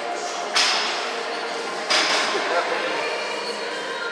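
Two sharp, hissing exhalations about a second and a half apart, a man breathing out hard as he drives each rep of a plate-loaded seated shoulder press.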